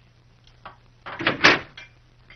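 A door shutting with a loud, short bang about a second and a half in. Light clinks of a plate and spoon being set on a table come before and after it.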